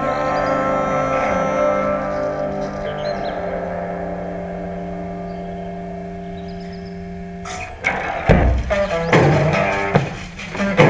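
Rock band music from the song: a held chord rings on and slowly fades for most of the stretch, then the full band with drums and bass comes back in loudly about eight seconds in.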